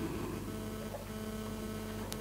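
Steady electrical mains hum, a few even low tones over faint room noise.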